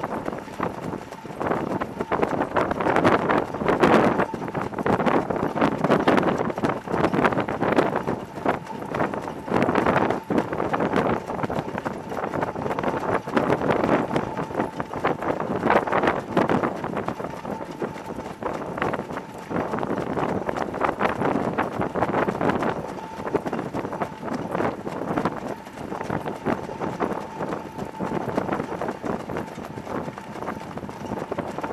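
Hoofbeats of several standardbred harness horses pulling sulkies at speed on a dirt track, a dense, overlapping run of hoof strikes heard up close from one of the carts. A faint steady high tone runs underneath.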